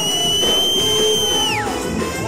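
Live band music from keyboard, trumpet and alto saxophone, with one very high note held for about a second and a half that falls away just before the end, like a loud whistle.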